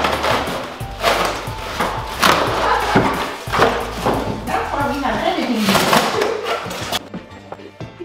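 Styrofoam packing blocks and plastic wrap being handled and pulled off a boxed exercise bike, giving a dense run of rustling, scraping and knocking, with background music with singing over it. The handling noise thins out about a second before the end.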